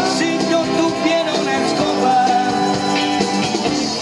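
Live band playing upbeat rock and roll, with electric and acoustic guitars over a drum kit, steady and loud.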